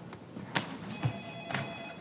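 Telephone ringing: one electronic ring of several high steady tones sounding together, lasting about half a second, starting about a second in.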